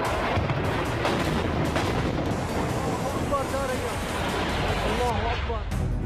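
Continuing rumble and roar of a large air-strike bomb explosion, with crackles running through it; voices shout over it from about halfway through.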